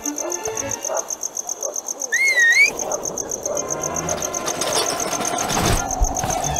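Cartoon soundtrack music with sound effects: short stepped notes at first, a brief wavering high glide about two seconds in, then a rising rumbling texture ending in a sharp hit.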